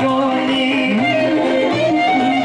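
Live traditional Greek folk music played for circle dancing, with a singing voice carrying the melody over the band.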